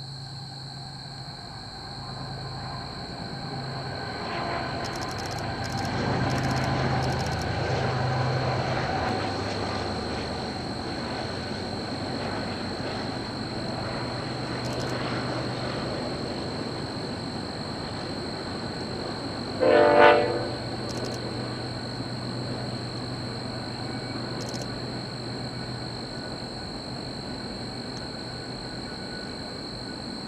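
Diesel freight locomotives hauling a double-stack container train across a steel trestle bridge: a steady engine drone and the rumble of the cars. About two-thirds of the way in, one short horn blast of about a second is the loudest sound.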